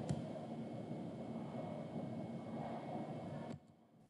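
Faint steady background hiss with a faint low hum, the room or line noise of the recording between spoken sentences. It cuts off abruptly to dead silence about three and a half seconds in.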